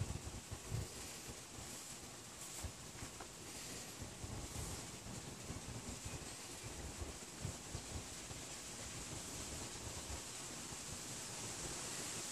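Faint outdoor background hiss with a few light rustles and soft bumps from hands holding a spoon and a scrap of char cloth.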